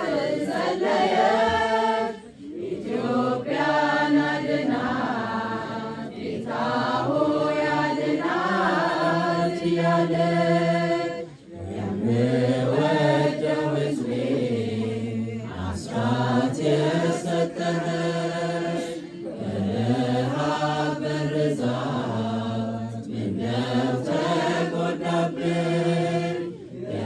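An Ethiopian Orthodox Tewahedo choir of women and men singing a mezmur (hymn) together, in chant-like phrases several seconds long with brief breaks between them.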